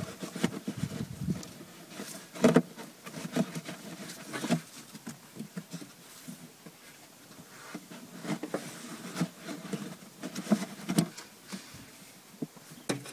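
Pollen filter and its plastic cover being handled and slid into the filter housing under a car's scuttle panel: scattered scrapes, rustles and knocks, the loudest a sharp knock about two and a half seconds in.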